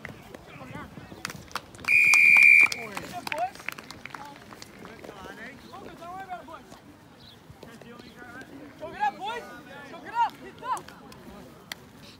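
Rugby referee's whistle, one sharp blast of under a second about two seconds in, after a player has gone to ground over the try line: the signal of a try. Scattered shouts from players and onlookers around it.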